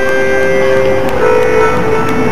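Live concert music: long held notes, two sounding together, with the upper one giving way to a new note about a second in.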